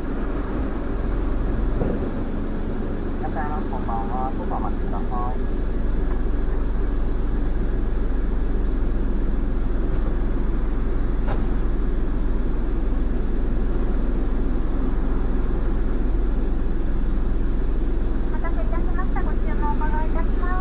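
A car's engine idling steadily, heard from inside the stationary car; the hum gets a little louder about six seconds in.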